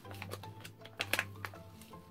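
Faint scattered clicks and crinkles of a resealable pouch of bath salts being handled and opened, over quiet background music.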